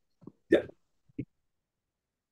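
Speech only: a single short spoken "yeah" about half a second in over a video call, with a couple of very brief vocal sounds around it.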